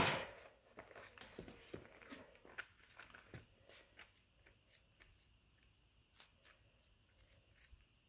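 Thin Bible pages being leafed through by hand: faint rustles and soft page flicks over the first few seconds, then near silence.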